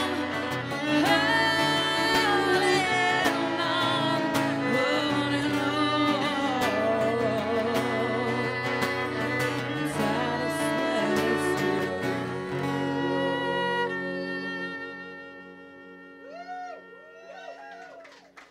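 A woman singing over a strummed acoustic guitar and a bowed cello, finishing a song. The singing stops about two-thirds of the way in, and the last chord is held and then fades away over the final few seconds.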